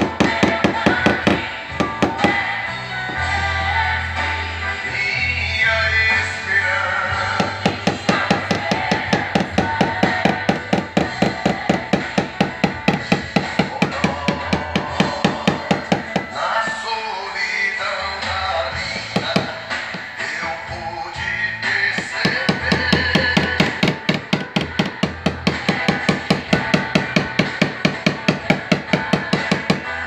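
Rapid, steady tapping of a small pointed tap-down hammer on a car body panel, several strikes a second, over background music with singing.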